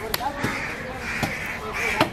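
Crows cawing over market voices, with short sharp clicks of a knife working along a large fish on a wooden chopping block.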